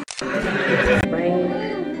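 Soundtrack audio: an animal-like vocal sound over background music. It starts after a brief dropout, with a noisy burst that cuts off sharply about a second in.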